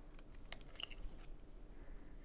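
Faint, scattered small clicks and taps of eggs being cracked and opened into a glass bowl.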